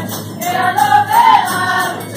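Folia de Reis group singing in chorus with drums and jingling percussion keeping a steady beat. The singing breaks off for a moment and comes back in about half a second in.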